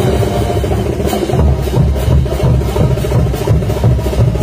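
Street parade band playing dance music, with a bass drum and hand cymbals keeping a steady beat under held wind-instrument tones.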